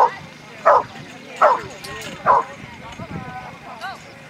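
A dog barking: four loud barks, about one every 0.8 seconds, followed by softer wavering sounds near the end.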